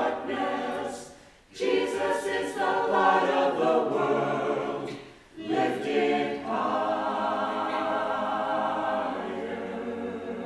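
Church choir singing an anthem, pausing briefly twice between phrases, then holding a long sustained chord near the end.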